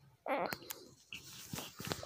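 A baby making soft, breathy grunting and snuffling sounds, with a few small clicks.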